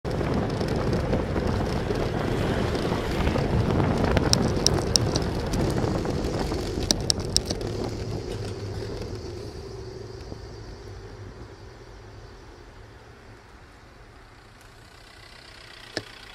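Wind and road noise rushing over a bicycle-mounted camera's microphone while riding in city traffic, fading away as the bike slows to a stop. Two short runs of sharp clicks come in the first half.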